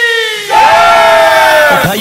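A held, slowly falling note that stops, then about half a second in a loud shout of many voices together, falling in pitch and lasting over a second: a crowd battle-cry sample dropped into a DJ competition remix.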